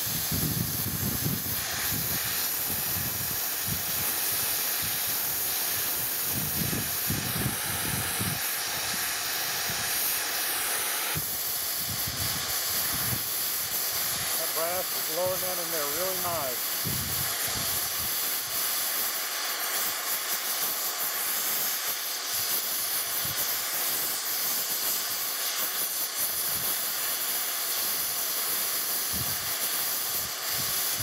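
Gas torch with a brazing tip burning with a steady hiss as it heats a steel steam-pipe joint for brazing. The hiss changes about eleven seconds in.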